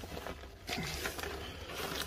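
Soft rustling and pattering of peat-based compost being scooped by hand and dropped into a plastic plant pot, a little louder from just under a second in.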